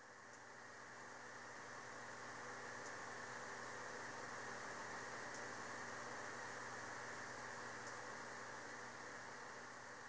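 Faint steady hiss with a low electrical hum, like a computer's fan running, and a faint high tick every couple of seconds; it swells in over the first two seconds.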